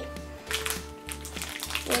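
Background music with a steady low beat and sustained held tones.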